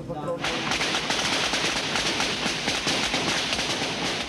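Sustained rapid gunfire, shots packed so close together that they run into one continuous volley, starting about half a second in.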